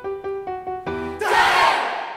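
Mixed choir singing a run of quick, short notes, then about a second in breaking off into one loud, collective shout that ends the piece.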